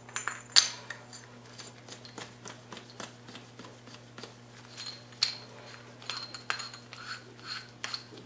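Scattered light metal clicks and clinks as the parts of a coilover shock, with its threaded collars and washers, are handled on a workbench. The loudest click comes about half a second in, and a few later clinks ring briefly. A steady low hum runs underneath.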